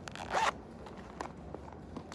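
The zipper of a clear plastic pencil pouch is pulled open in one quick stroke lasting about half a second. A few faint clicks follow as pens are handled.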